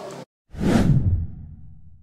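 Whoosh sound effect with a deep rumble under it, swelling suddenly about half a second in and fading out slowly: an outro transition into a logo card.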